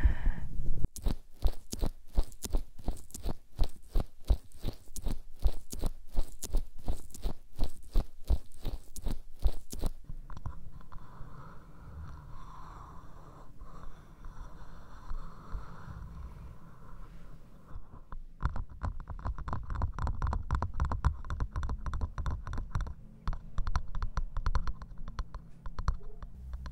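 Close-miked ASMR trigger sounds: dense, rapid crackling and scratching clicks for several seconds, then a softer, quieter rustle, then rapid crackling again near the end.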